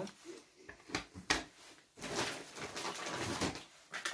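Groceries being handled and put down: a couple of sharp knocks about a second in, then a second or two of rustling packaging as the next item is fished out.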